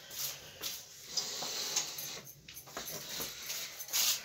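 Rustling and scraping of a small toy can and its packaging being handled and opened, with scattered small clicks.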